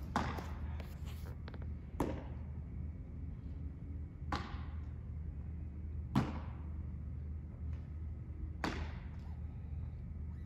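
A baseball being caught in leather gloves during a game of catch: five sharp pops about two seconds apart, each with a short echo, over a steady low hum.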